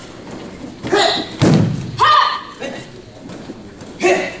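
A body thrown onto a foam mat in a jujutsu demonstration: one heavy thud about one and a half seconds in, between two short, sharp shouts.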